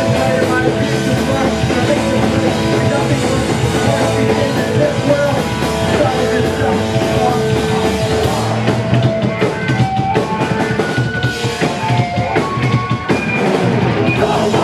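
Hardcore punk band playing live at full volume: electric guitars and a drum kit driving a fast, continuous song.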